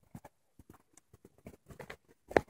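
Faint, irregular clicking of dogs' claws and paws on a paved path as they trot alongside.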